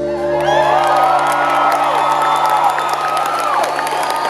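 Concert audience cheering and whooping loudly, with high wavering whoops, over the band's last chord held and ringing out as the song ends.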